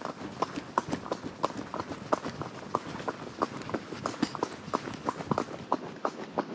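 A horse's hooves striking a gravel track at a steady rhythm, about three hoofbeats a second.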